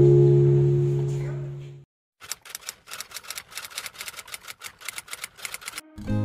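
Acoustic guitar chord ringing and fading away over the first two seconds. After a brief gap comes a run of rapid, sharp clicks, several a second, for about four seconds.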